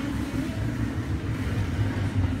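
Steady low rumble of background room noise with no distinct events.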